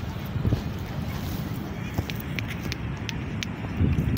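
Wind buffeting a phone microphone as a steady low rumble, with faint voices of a crowd in the background and a few light ticks.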